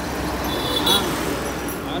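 Steady background noise like passing road traffic, with a brief high-pitched tone just under a second in.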